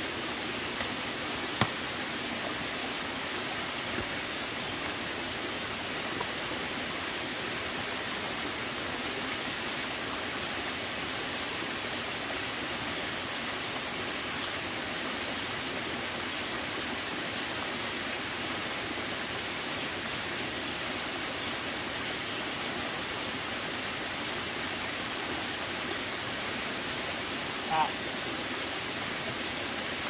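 Steady rush of a muddy stream running over rocks, with a sharp click about a second and a half in and a brief higher-pitched sound near the end.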